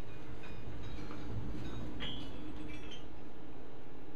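Heavily loaded steel tool chest (about 671 pounds) rolling on five-by-two-inch 55D-durometer caster wheels: a steady low rumble, with a few light metallic clinks around two seconds in.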